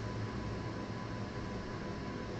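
Steady background hiss with a low hum and a thin, faint steady whine: room and microphone noise with no distinct event.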